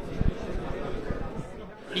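Room sound of a hall with indistinct background voices, and a short low bump about a quarter second in.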